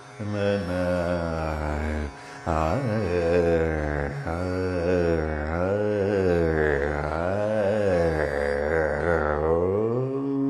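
A man's voice singing Carnatic music in raga Saveri, its notes sliding and oscillating in ornamented gamakas, over a steady drone from plucked strings. There is a brief pause for breath about two seconds in.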